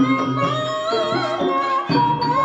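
Traditional Javanese ebeg dance music. Hand-drum strokes sound under a sustained high melody that wavers in pitch.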